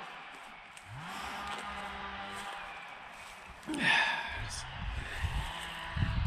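A man's drawn-out hesitation sound, a long "uhh" that rises at its start and is then held at one steady pitch for about two seconds. About two-thirds of the way in he says a breathy "and", and a low rumble follows in the last two seconds.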